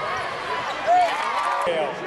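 Basketball game sounds: sneakers squeaking on the hardwood court in short rising-and-falling chirps, the loudest about a second in, with a ball bouncing and spectators talking.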